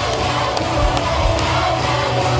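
Live pop-rock band music with a steady low beat and a few sharp percussion hits, in a short gap between sung lines.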